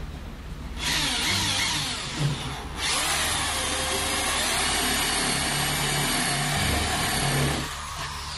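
Ryobi power drill boring a hole through a wooden base with a one-inch paddle bit. It starts about a second in, pauses briefly, then runs steadily until it stops near the end.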